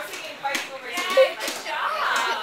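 A child's voice at close range, broken by several sharp knocks and rustles as the phone is handled against clothing.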